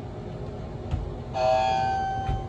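Elevator arrival chime: a single ding about two-thirds of the way through that fades over about a second, over the low rumble of the hydraulic car travelling, with a click just before it.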